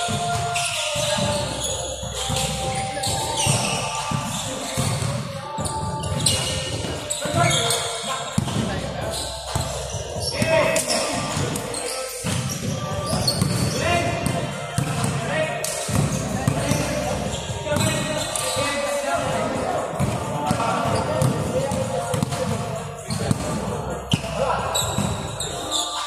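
A basketball bouncing again and again on a wooden gym floor during a game, with players' voices calling out over it.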